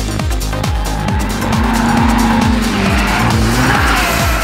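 Ford Cosworth car on a race circuit, its engine held steady with a squealing tone above it, typical of tyres squealing through a corner. All of it is mixed under electronic dance music with a steady kick-drum beat.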